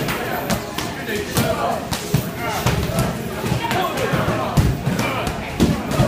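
Kicks and punches hitting padded kick shields and focus pads: a dense, irregular run of slaps and thuds from several pairs at once, with voices of the class underneath.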